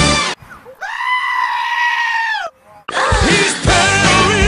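A goat scream: one long, nasal call held at nearly one pitch for about a second and a half, in a break where the backing music drops out. The music comes back a little before the end.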